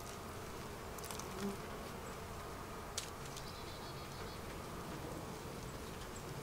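Honeybees buzzing steadily around an open hive, with a faint click about three seconds in.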